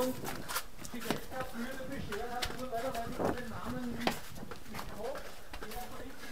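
Quick footsteps of a runner climbing concrete tower stairs, a series of sharp footfalls at about one to two a second, with voices in the background.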